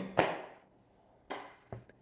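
A pause in a man's talk: his last word trails off, then after about a second of quiet a short rushing noise and a single small click come just before he speaks again.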